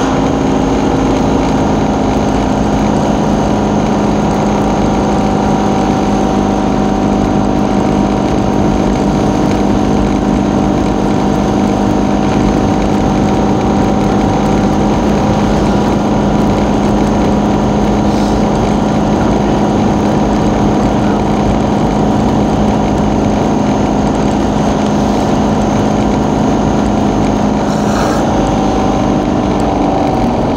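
Steady engine drone and road noise heard from inside a moving road vehicle travelling at an even speed; the engine hum holds one pitch throughout.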